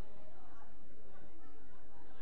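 Indistinct conversation: several people talking at once in the background, with no single voice standing out.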